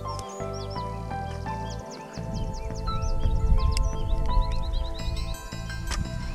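Background music with sustained notes over a pulsing bass, with high chirps like birdsong above it. From about two seconds in, a low rumbling noise grows louder under the music.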